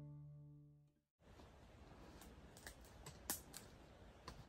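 Background acoustic-guitar music dying away over the first second, then a brief dead gap and faint outdoor ambience with a few soft clicks.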